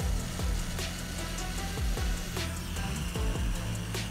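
Background music over the steady hiss of a hot-air rework gun blowing on a graphics-card memory chip while it is being desoldered.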